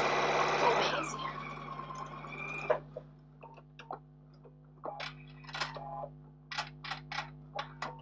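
Electric sewing machine stitching at speed for about the first second, then running slower with a whine and stopping with a sharp click a little under three seconds in. After that, only a few light clicks and taps.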